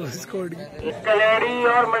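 A man's commentary voice calling out a kabaddi match in long, drawn-out, sing-song shouts, starting loudly about a second in.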